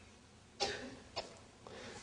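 A brief, quiet cough-like throat sound about half a second in, followed by a faint click.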